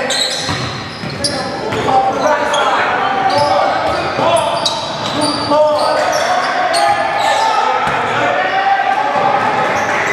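Basketball game sounds in a large gym: a ball bouncing on the hardwood court and players' indistinct voices echoing in the hall, with frequent short sharp sounds throughout.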